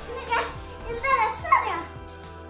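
A young child's voice making three short, high-pitched vocal sounds in quick succession, with a low steady hum underneath.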